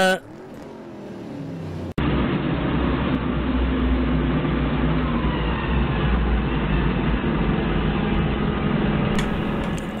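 Doosan 4.5-ton forklift's engine running steadily as the forklift drives along a road, a low drone heard through a dashcam's muffled microphone. It comes in suddenly about two seconds in, after a quieter, slowly rising hum.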